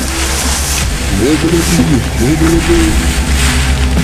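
Film soundtrack: a wordless voice chanting or humming in long, gliding notes over a steady low drone.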